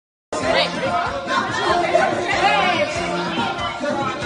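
Several people chattering and talking over one another with music playing underneath, starting abruptly after a brief silence.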